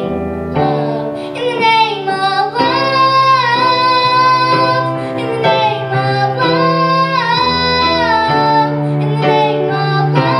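A young girl singing long, sliding notes into a microphone over grand piano chords that change every second or two.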